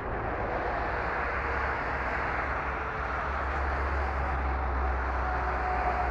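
Tanker truck's diesel engine running steadily as the truck pulls forward, a continuous low sound with no sharp events.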